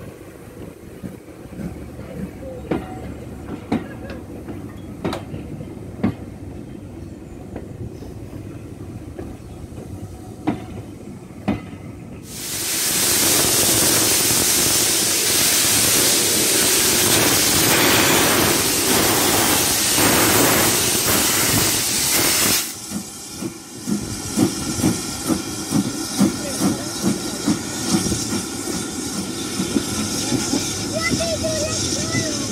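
Steam railway sounds: first a train rolling past with sparse clicks and knocks over a low rumble; then, about twelve seconds in, a loud hiss of escaping steam from a steam locomotive starts suddenly and cuts off about ten seconds later. The locomotive then pulls away with steady exhaust chuffs, about three every two seconds.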